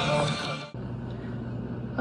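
Rock song with electric guitar and singing, cutting off abruptly less than a second in, followed by a low steady hum.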